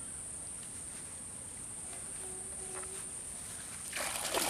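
Steady high-pitched chirring of insects, running unbroken.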